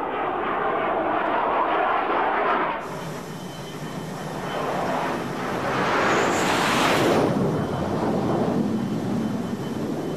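Jet aircraft noise, steady at first, then swelling to a loud peak about six to seven seconds in before easing off, as a jet passes.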